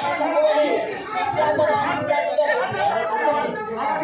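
Several people talking at once, their voices overlapping into an unbroken chatter with no single clear speaker.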